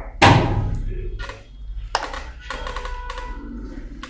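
A single loud thunk just after the start that fades over about a second, followed by a few fainter taps.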